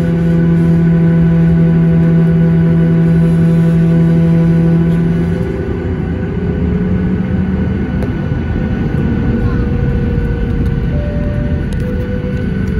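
Boeing 737-900ER heard from inside the cabin while taxiing: its CFM56-7B engines' steady hum and whine over a rumble from the rolling airframe. A strong low tone fades about halfway through, leaving a rougher, noisier rumble.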